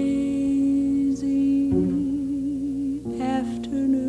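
Slow jazz ballad: a female vocalist draws out long held notes with a slow vibrato, breaking twice into new syllables, over soft piano and double bass accompaniment.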